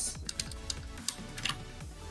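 Computer keyboard keys clicking: several separate keystrokes spread irregularly across the two seconds.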